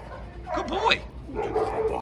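Siberian Husky whining and yipping in short calls that rise and fall in pitch, about half a second in and again near the end.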